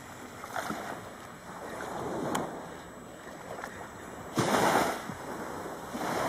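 Surf washing on a sandy beach, a steady rush of water with a louder surge about four and a half seconds in.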